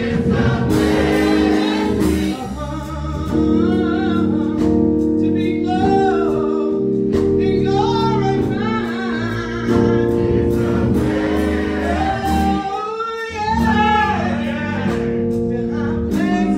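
A gospel choir singing in parts over sustained accompanying chords.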